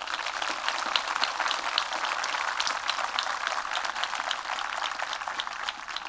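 Audience applauding: a dense, even clapping of many hands.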